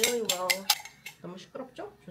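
Metal spoon beating raw egg in a glass bowl, clinking sharply against the glass several times in the first second.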